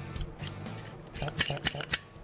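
Handling clicks of a MaxPro reverse brake bleeder as its front cylinder is fitted back on: a few sharp clicks and light scrapes, most of them in the second half, over quiet background music.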